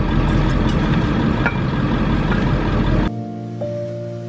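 A cargo van running, heard from inside the cab as a steady low noise. About three seconds in it cuts off suddenly and gives way to music of plucked, piano-like notes.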